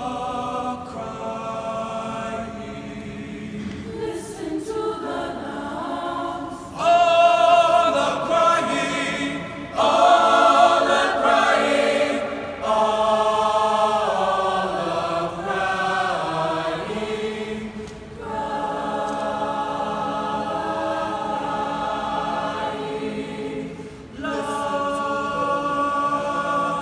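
Mixed-voice high-school choir singing a cappella: sustained chords in phrases, growing suddenly louder about seven seconds in and again about ten seconds in, with short breaths between phrases later on.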